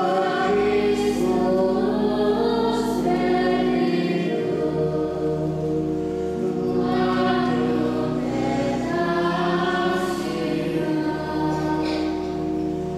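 A choir singing sacred music during Mass, in long held chords whose notes change every few seconds, with deep sustained low tones beneath the voices.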